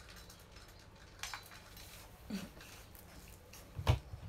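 Faint handling noise: a few soft clicks and rustles, then one louder knock just before the end.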